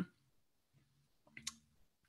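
Near silence in a pause between words, broken about one and a half seconds in by one brief, faint mouth click, a lip smack.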